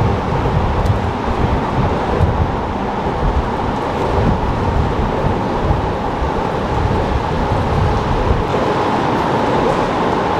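Steady traffic noise from the elevated highway overhead, with wind buffeting the microphone.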